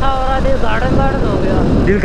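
A motorcycle moving at road speed, with steady wind rush and rumble on the microphone under a man's talking.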